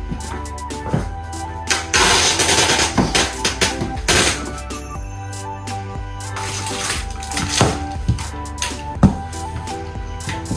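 Background music over packing tape being pulled off its roll and pressed onto a cardboard box, with noisy pulls of tape about two, four and seven seconds in. A sharp knock comes about nine seconds in.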